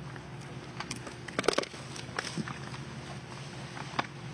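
A golf driver striking the ball off the tee: one sharp crack about a second and a half in, over faint outdoor background with a few light clicks.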